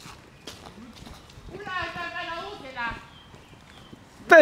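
A person's raised voice calling out in one drawn-out, wavering shout of about a second, starting about a second and a half in. A few light knocks of footsteps on grass come before it.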